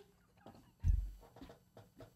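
Stifled laughter from two men with no words, and a single dull low thump about a second in.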